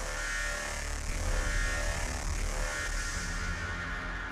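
Electronic music with a deep, steady bass.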